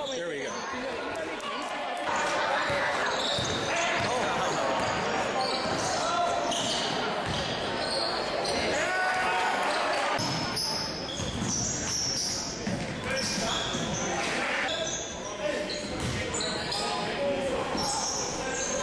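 Live basketball game sound in a gymnasium: the ball bouncing on the hardwood, sneakers squeaking, and spectators' voices and shouts echoing around the hall.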